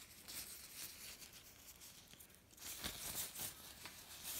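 Quiet crinkling and rustling of thin plastic as hands in disposable plastic gloves handle it, with a busier run of sharp crackles from a little past halfway.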